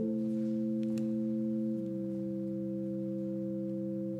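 Organ playing slow, held chords of pure, flute-like tones as offertory music; a new chord sounds at the start and one note steps down a little under two seconds in.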